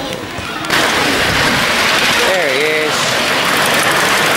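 A miniature steam locomotive venting a loud, steady hiss of steam, starting suddenly under a second in.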